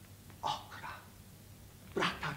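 Dog barking: two short barks about half a second in, and another near the end.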